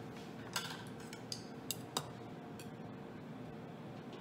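Several light clinks and taps of kitchen utensils against dishes, scattered over the first three seconds, above a faint steady hum.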